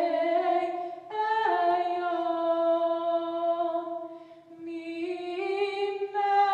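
A young woman singing solo and unaccompanied, in slow, long-held notes. She breaks briefly for breath about a second in and again around four and a half seconds in.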